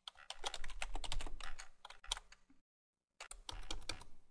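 Computer keyboard being typed on: quick runs of key clicks, broken by about half a second of silence shortly before the end.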